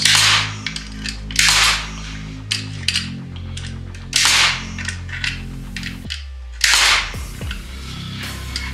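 Metabo HPT pneumatic metal connector nailer firing hanger nails through steel connector plates into wood: several sharp, loud shots a second or more apart.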